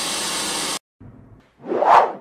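Logo-sting sound effect: a loud burst of static hiss that cuts off suddenly under a second in, then a faint crackle and a short whoosh that swells and fades near the end as the logo settles.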